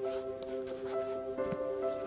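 Pencil scratching on paper in several short strokes, with a rustle of paper sheets near the end, over background music of soft sustained notes.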